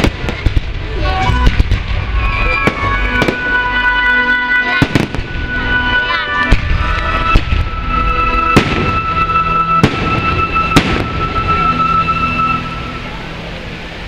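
Aerial fireworks bursting: a series of sharp bangs, roughly one a second, some in quick pairs. Music plays steadily alongside.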